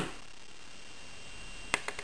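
Quiet room noise, opening on the tail of a sharp snip of flush wire cutters through thin metal wire, with two faint light clicks near the end as a small wire jump ring is handled between the fingers.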